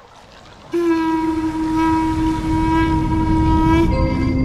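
Harmonium holding one long, steady note for about three seconds, then moving to a new note, as the instrumental introduction of the next devotional song begins over a low steady rumble.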